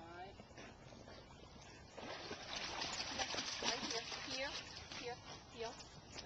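A black retriever splashing through shallow water as it comes ashore from a pond. The splashing swells about two seconds in, is loudest for the next couple of seconds, then dies down.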